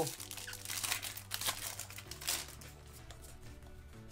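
A Pokémon booster pack's foil wrapper crinkling and tearing as it is ripped open by hand, busiest in the first couple of seconds, over quiet background music.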